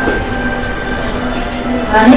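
Background music with long held notes over a low hum.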